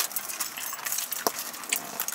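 Gold chain necklaces and wrist bracelets jingling and clinking as they are handled and untangled by hand: a run of light metallic clinks, one louder about halfway through.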